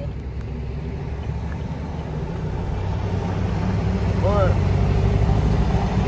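Car interior noise while driving slowly in traffic: a steady low engine and road rumble that grows a little louder over the second half. A brief vocal sound comes about four seconds in.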